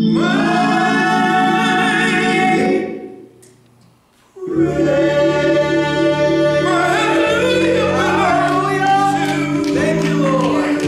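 Worship singing by a group of voices over steady held accompaniment chords. The held notes fade out about three seconds in, and after a short near-silent pause the singing and music start again about four and a half seconds in.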